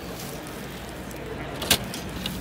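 A metal door push bar clacking once, sharply, near the end, over a steady low hum of a large hall.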